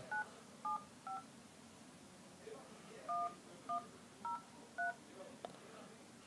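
iPhone keypad touch tones (DTMF) as a phone number is keyed in: three short two-note beeps in quick succession, a pause of about two seconds, then four more beeps about half a second apart, keying the digits 9, 7, 5 and then 1, 1, 0, 3.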